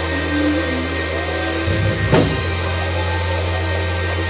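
Live church worship music: a sustained low bass chord that shifts under a short melodic line, with one drum hit about two seconds in.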